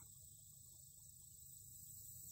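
Near silence, with a faint steady high-pitched chirring of crickets.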